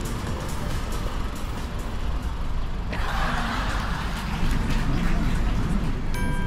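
Steady low vehicle rumble in a car park, with a rushing hiss that comes in about halfway through.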